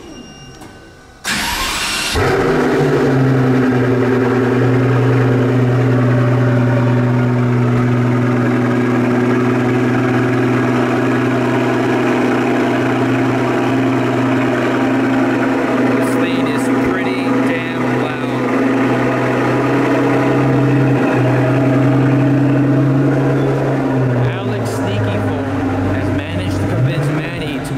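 Pagani Huayra's twin-turbo V12 starting about a second in with a short flare of revs, then settling into a loud, steady idle. The idle note drops slightly in pitch near the end.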